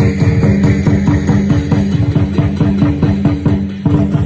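Loud music with a fast, steady drumbeat over held low notes.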